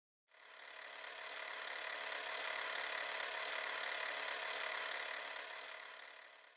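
A steady mechanical running sound with a whirring hum, fading in at the start and beginning to fade out near the end.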